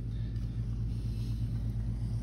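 A steady low machine hum in the background, unchanging, with no other distinct sound.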